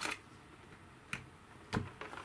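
Three short plastic clicks as a battery's white multi-pin balance-lead plug is worked into the balance port of an ISDT T6 charger.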